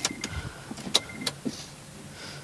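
Ignition key being turned in a Honda Amaze's lock to switch the dashboard on: two sharp clicks about a second apart, each followed by a short high electronic beep. The engine is not started.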